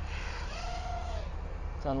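FPV quadcopter's motors spinning up for takeoff: a brief whine that rises and falls over about a second, over a steady low hum.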